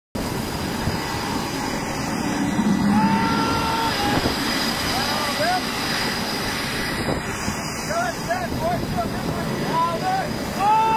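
Steady roar of wind and machinery noise on an aircraft carrier's flight deck in bad weather, with short voice calls over it about three seconds in, again around five seconds and several times near the end.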